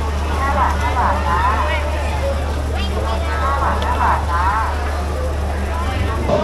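Several people talking in a busy market crowd, over a steady low hum.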